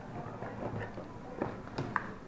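Cardboard Happy Meal box being handled and rummaged through, with a few light knocks on a wooden table in the second half, the loudest just at the end.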